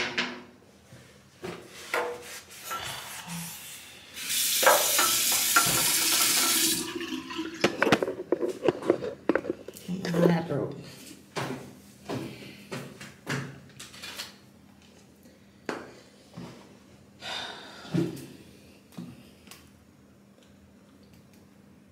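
Water running from a bathroom tap for about three seconds, in a small tiled room, amid many short clicks and knocks of small items being handled on the counter.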